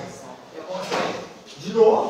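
A classroom door being worked and opened by its handle: a click of the latch about a second in, then a brief, louder sound near the end.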